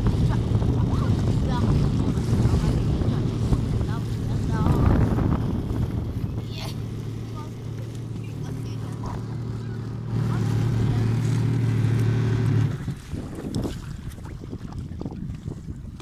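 Jet ski engine running at a steady pitch while underway, with children's voices and squeals over it in the first few seconds. Near the end the engine note drops away sharply and the sound gets much quieter.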